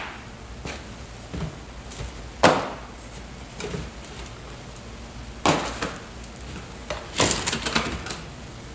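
Small boxed lights and packaging being handled and set down on cardboard: a few sharp knocks about two and a half and five and a half seconds in, then a quick run of taps near the end.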